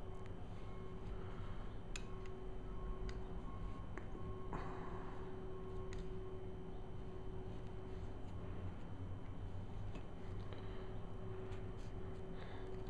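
A few faint, scattered ticks and clicks of a small precision screwdriver working tiny screws out of a plastic lens barrel, over a steady low hum.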